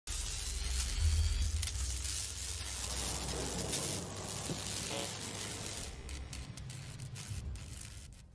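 Logo-intro sound effect: a dense, crackling, glitchy noise texture over a deep bass rumble that is strongest about a second in. The crackles grow sparser in the last couple of seconds and the whole sting fades near the end.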